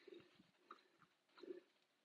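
Near silence, with three faint, brief handling sounds as two alignment sticks are set down on an artificial-turf hitting mat.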